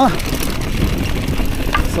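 Mountain bike rolling down a rocky dirt singletrack: tyre crunch on loose stones and many small rattles and clicks from the bike, over a steady low rumble.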